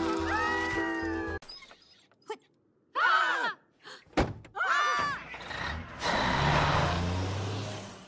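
Film soundtrack music that stops abruptly, followed by a near-silent pause, short vocal noises, and a single sharp thunk of a car's rear hatch being pushed shut about four seconds in. A low, noisy hum follows and fades.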